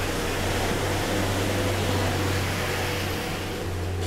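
Steady urban background noise: a constant low hum under an even hiss, with no distinct events.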